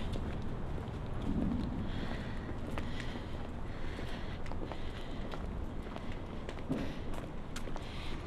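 Footsteps on pavement, irregular, over a steady low rumble of city traffic.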